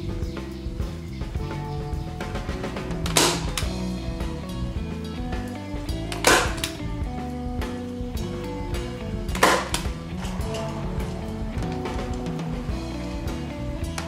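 A hand-squeezed manual staple gun snaps three times, about three seconds apart, driving staples through upholstery material into the wooden chair seat. Background music plays throughout.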